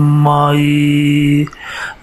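A man chanting in a long, drawn-out, steady tone on one low pitch, breaking off about one and a half seconds in for a breath.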